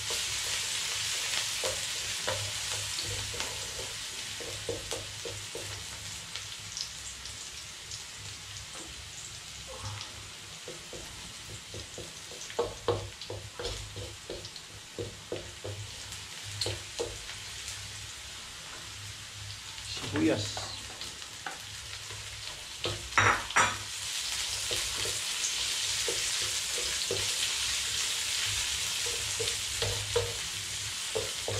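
Minced garlic sizzling in hot cooking oil in a wok, stirred with a wooden spatula that scrapes and taps against the pan. The sizzle is stronger at the start and again over the last few seconds, with a few louder spatula knocks about twenty and twenty-three seconds in.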